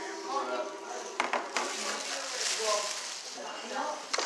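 People talking indistinctly, with a few sharp clicks a little over a second in.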